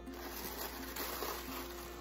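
Packaging rustling steadily as hands unwrap an item from a subscription box, with faint background music held on steady tones underneath.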